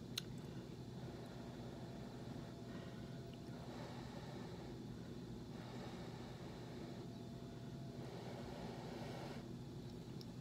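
Faint sounds of a man eating chili from a spoon: soft, noisy mouth and breathing sounds in several stretches of about a second each through the second half, over a steady low room hum. A small click just after the start.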